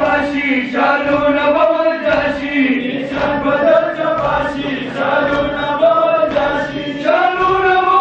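A crowd of men chanting a Shia mourning lament (noha) together in long, held sung lines, with low thuds of hands beating chests in time.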